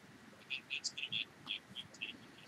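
A quick series of short, high chirps, about ten in a second and a half, like a small bird calling.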